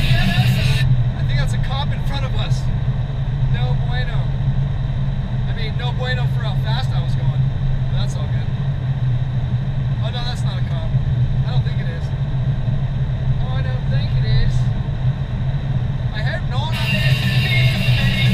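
Steady low drone of a car's engine and tyres heard inside the cabin. Over it, a voice plays on the car's audio system with a thin, telephone-like sound, from about a second in until near the end.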